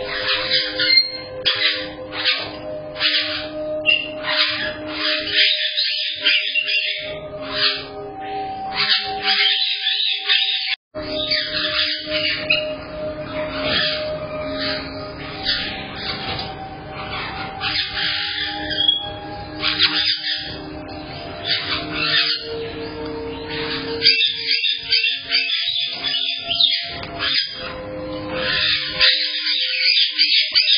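Caique parrots chirping and squawking over and over, high and sharp, over music with held notes.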